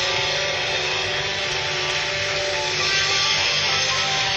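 Live blues-rock band playing, an electric guitar leading over bass and drums, steady and continuous.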